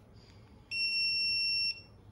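Snap-on electronic torque wrench giving one steady, high-pitched beep about a second long, starting partway in: the signal that the cylinder head bolt has reached its set torque.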